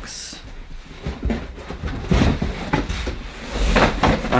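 Cardboard boxes being handled: a large shipping box is tilted and a smaller cardboard box is pulled up out of it, with scraping and rustling of cardboard and a few knocks, the loudest near the end.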